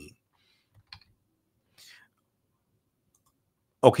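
A pause between speech, mostly quiet, with a few faint short clicks about a second in and a soft breathy hiss near two seconds. A man's voice comes back just before the end.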